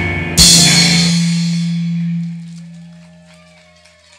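Rock band with electric guitars, bass and drum kit hitting the final chord of a song about half a second in. A cymbal crash and a low sustained note ring out together and fade away over about two seconds.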